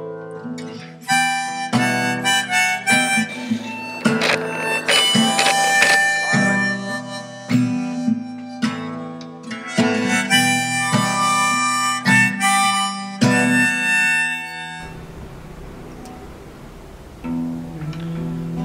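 Harmonica playing a melody over strummed acoustic guitar. The music drops off to a quiet stretch about fifteen seconds in. The guitar strumming starts again near the end.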